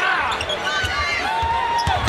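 Basketball dribbled on a hardwood court, a steady run of bounces, with short high squeaks of sneakers on the floor over a murmuring arena crowd.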